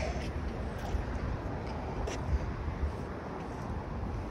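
Outdoor background noise with a steady low rumble and a few faint knocks of footsteps as the phone is carried along at a walk.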